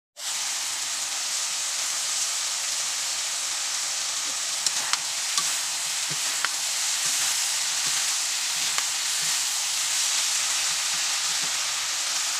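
Adobong sitaw (yardlong beans with meat) frying in a wok, with a steady high sizzle as a ladle stirs it and a few sharp clicks of the ladle against the pan near the middle.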